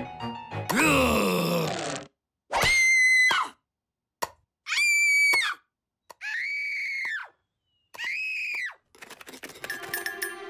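A cartoon character's laugh, followed by four separate high, drawn-out screams of about a second each with short silences between them, then a clatter near the end.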